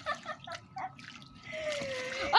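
Water and gel water beads (Orbeez) sloshing in an inflatable pool as legs move through them, with short bits of laughter in the first second; a voice starts near the end.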